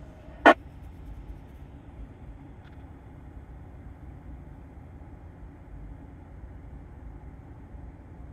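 Steady low hum of a pickup truck idling with its air-conditioning fan running, heard inside the cab. A single sharp click comes about half a second in.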